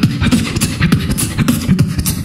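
Beatboxing into a microphone cupped in both hands: a fast beat of sharp clicks and hissy hi-hat strokes over low bass notes that slide up and down in pitch, all made by mouth with no effects.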